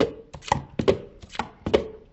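Hard plastic Speed Stacks sport-stacking cups clacking against each other and the mat as they are quickly stacked up into pyramids: about five sharp clacks, roughly two a second, some with a brief ring.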